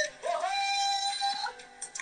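A song with a singing voice that slides up into one long held note lasting about a second, then drops away to a quieter passage.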